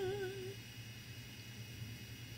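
A woman's voice holding a sung note with vibrato, fading out about half a second in. After that only quiet room tone with a low steady hum.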